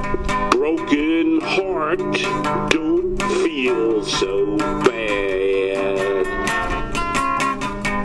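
Acoustic guitar picked in a steady pattern, with a gliding, bending melody line on top that fades out about six seconds in.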